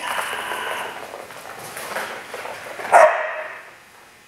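Dog barking in a large echoing hall, with one loud bark about three seconds in.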